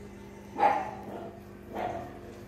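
A dog barking twice, short barks a little over a second apart, the first the louder, over a steady low hum.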